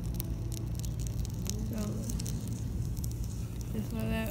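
A burning wax crayon crackling with scattered small clicks as its paper wrapper burns and wax drips, over a steady low rumble.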